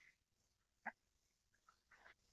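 Near silence broken by one short, sharp click-like sound just under a second in, from handling a freshly opened aluminium energy-drink can, with a few faint ticks near the end.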